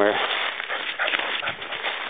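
Footsteps walking through a thick layer of fallen leaves: an irregular rustling of steps.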